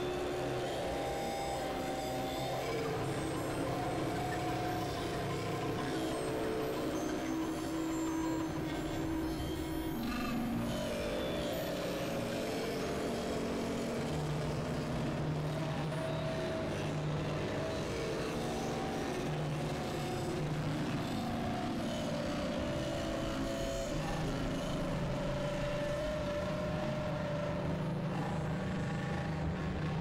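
Experimental synthesizer drones: a dense, noisy industrial texture of held tones that step to new pitches every second or two over a steady low rumble.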